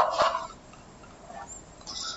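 A short, loud non-speech sound from a man's voice, such as a cough or throat noise, right at the start. It dies away within about half a second and leaves quiet room tone.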